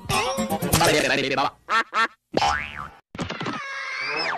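Cartoon studio-logo jingle: music with springy boing effects and goofy voice-like noises. About three seconds in it breaks off briefly and another short jingle with falling whistle-like glides starts.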